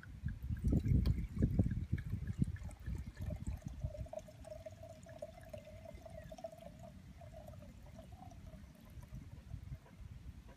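Red wine poured from a bottle into a large Burgundy wine glass in a long, continuous stream. Low rumbling noise is loudest for the first few seconds, and from about three and a half seconds in a steady ringing tone runs under the pour until shortly before the end.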